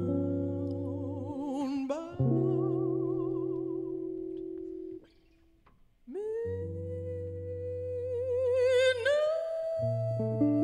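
Female jazz vocalist holding long wordless notes with a wide vibrato, each scooping up into pitch, over sustained accompanying chords. The phrases break off briefly about halfway through, and the last note steps up higher near the end.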